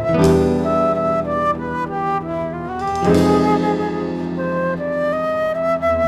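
Live instrumental ensemble: a flute melody over nylon-string guitar and a drum kit. Two strong accented hits from the kit, with ringing cymbal wash, land just after the start and about halfway through.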